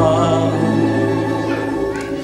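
Mixed choir and tamburica orchestra holding a sustained chord, the sound slowly dying away.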